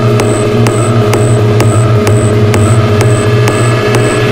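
Minimal techno track: a deep bass tone held steady under sustained synth tones, with a crisp percussive tick repeating about twice a second.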